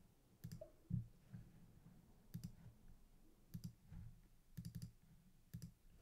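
Faint computer mouse clicks, about six short clusters spaced roughly a second apart, the one about a second in the loudest, over a low steady hum.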